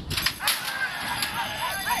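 Metal starting-gate doors banging open as racehorses break from the stalls, a few sharp clanks early on, followed by shouts of "hey" near the end.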